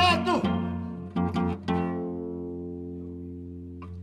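Guitar accompaniment in a song. A sung phrase ends just as it opens, a few quick strums come about a second in, and then one chord rings out and slowly fades.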